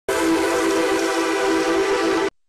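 A sustained electronic chord from a TV show's title ident, starting almost at once and held at one unchanging pitch.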